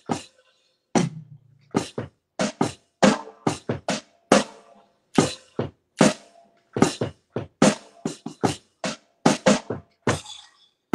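A drum struck with drumsticks in a slow, loose groove, about two to three hits a second, with a short pause after the first hit.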